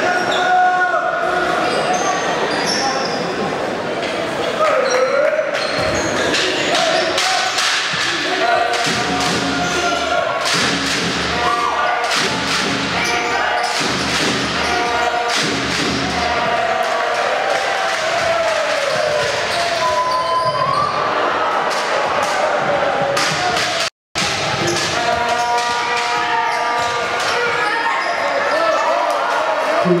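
A basketball bouncing on a hardwood court during live play, with many short thuds, over voices of players and spectators echoing in a sports hall. The sound cuts out completely for a moment about three quarters of the way through.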